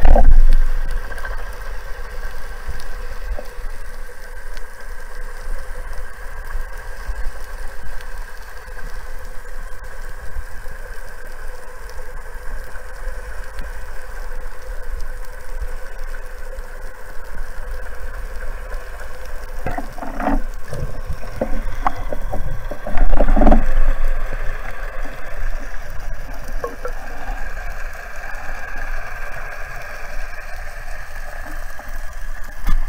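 Underwater ambience heard through a camera in its housing: a steady hum of boat engines carried through the water, with a few knocks about 20 and 23 seconds in.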